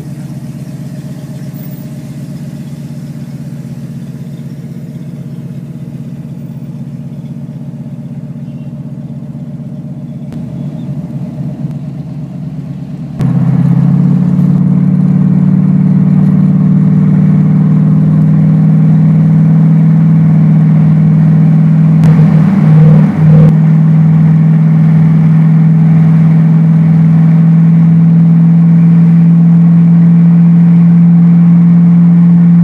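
Car engine and road noise heard from inside the cabin while driving, a steady hum that jumps sharply louder about 13 seconds in as the car picks up speed on the highway, with a brief waver and dip in level near 23 seconds in.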